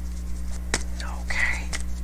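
A person whispering or breathing out softly under the breath, with two short clicks, over a steady low hum.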